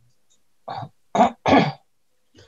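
Someone clearing their throat: three short, rough bursts in quick succession, heard over a video-call connection.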